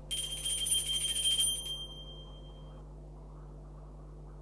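Altar bells shaken at the elevation of the chalice, marking the consecration: a rapid jangling ring for about a second and a half, then a single high tone dying away.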